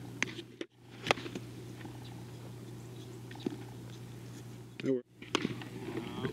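Sharp crack of a bat hitting a ground ball about a second in, over a steady low hum. A short call from a voice comes near the end, followed by a few light clicks.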